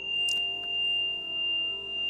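Ambient meditation music: a steady high ringing tone held over softer, lower sustained tones, the whole swelling and fading in a slow, even pulse.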